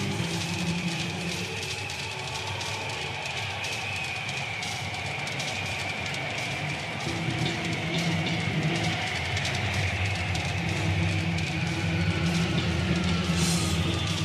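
A rock band playing an instrumental passage: electric guitar over bass and drums, with a high held guitar line that slowly bends in pitch. The band gets louder about seven seconds in.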